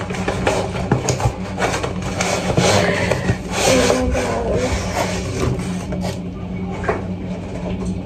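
A cardboard shipping box being opened and a foam packing sheet pulled out of it: a run of crinkly rustling and scraping, easing off near the end.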